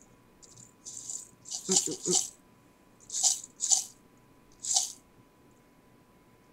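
Metal paper clips and binder clips rattling and clinking against each other inside a small cylindrical organizer cup as it is handled, in about five short bursts.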